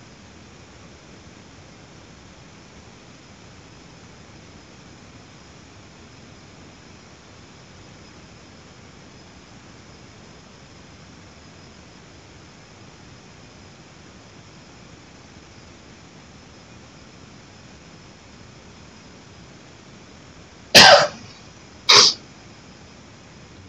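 Faint steady hiss, then a person coughing twice, about a second apart, near the end.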